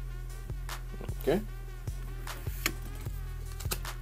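A steady low buzzing hum runs underneath, with faint short clicks scattered irregularly through it.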